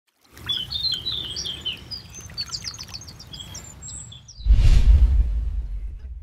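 Small birds chirping and singing over a low rumble, then a loud low whoosh about four and a half seconds in that slowly fades out.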